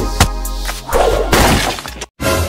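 Cartoon sound effect of a toy backhoe loader being smashed to pieces: sharp knocks at the start, then a shattering crash about a second in, over background music.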